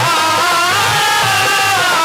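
Haryanvi ragni folk music performed live: a sustained, wavering melody over a regular low drum beat.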